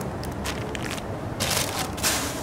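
Thin plastic bag rustling and crinkling as it is handled, in several short bursts.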